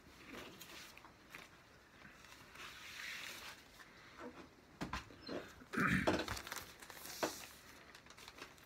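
A vinyl LP and its paper inner sleeve being handled and slid out of the cardboard jacket: soft rustling of paper with a few light knocks, the loudest bump about six seconds in.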